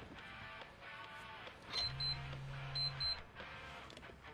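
Soft background music, then a pager goes off a little under two seconds in: a low vibrating buzz with two pairs of short high beeps about a second apart.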